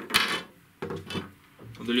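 Graphite feeder rods knocking and sliding against one another and the tabletop as they are handled: a short clatter at the start and a smaller one about a second in. A tape measure is being drawn out along a rod handle.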